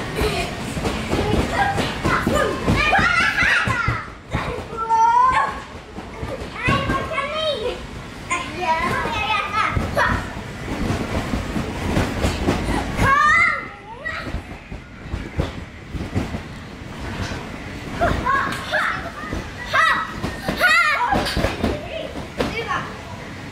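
Children playing: high-pitched young voices shouting and squealing in short outbursts over a continual clatter of knocks and thumps.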